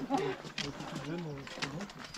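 Runners' voices talking close by in a group, not clearly worded, with a few sharp clicks from footsteps and trekking poles striking rock as they climb.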